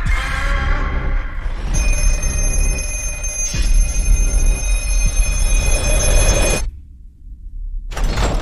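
Horror trailer music over a deep bass rumble. About two seconds in, an old telephone bell starts ringing and holds steady. Near the end everything cuts off suddenly to a low rumble, then a loud hit lands.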